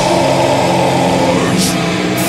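Death metal band playing live: heavily distorted guitars holding a droning chord over the drums, with a cymbal crash about one and a half seconds in.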